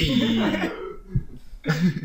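Men bursting into laughter at a joke: a loud, sudden outburst at the start, then a second short laugh near the end.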